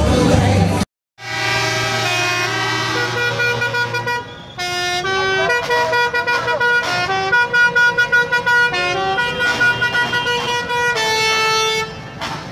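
The rap track cuts off about a second in, and after a brief gap a musical vehicle horn plays a tune: a string of held notes stepping up and down in pitch, with short breaks between them.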